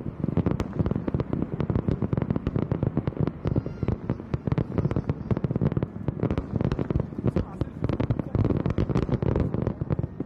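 Aerial fireworks bursting: a dense, rapid run of bangs and crackles, many per second, without a break.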